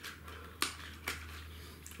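A few small clicks and taps as the Kyosho Mini-Z Monster Truck's body shell is pulled out on one side and pushed onto the chassis mounting posts, the sharpest a little over half a second in and another about a second in, over a low steady hum.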